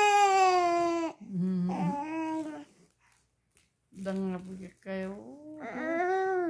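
Baby vocalizing: a long high-pitched squeal of about a second, then a few shorter babbling sounds with pauses, and another squeal near the end.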